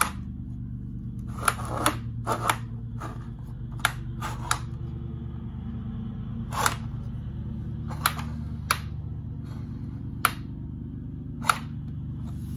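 Plastic toy train turntable being rotated by hand, clicking sharply and irregularly about a dozen times as it turns, over a steady low hum.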